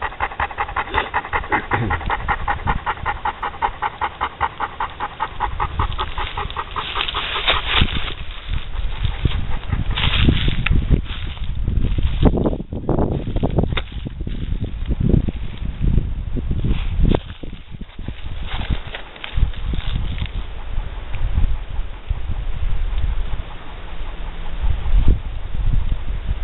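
A dog panting rapidly and evenly, about four pants a second, for the first six or seven seconds. After that come irregular rustling and low rumbling noise.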